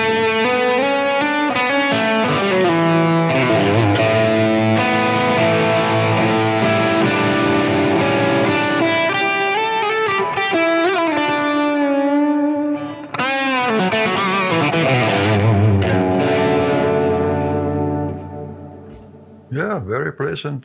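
Vintage Fender Stratocaster played through a Klon-style overdrive pedal into a Divided by 13 amp: a mildly overdriven lead passage with bent notes. It breaks off briefly around thirteen seconds and dies away near the end.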